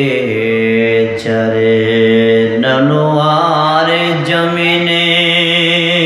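A man's voice chanting an Islamic devotional zikir line into a microphone in long drawn-out notes. The pitch steps up about halfway through and he holds that one note steadily to the end.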